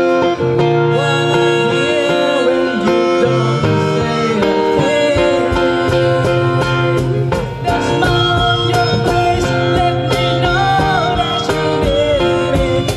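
Live acoustic ballad: a male voice singing through a microphone over strummed acoustic guitar, with held chords underneath and a steady beat of light percussion taps.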